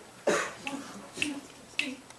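Finger snaps keeping a steady beat, a sharp snap a little over every half second, as the a cappella group counts itself in before singing.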